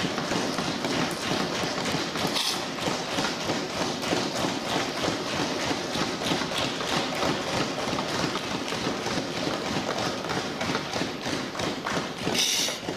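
Many hands thumping on wooden desks at once, a dense, irregular patter of knocks that keeps up steadily: members applauding in the Indian parliament's way.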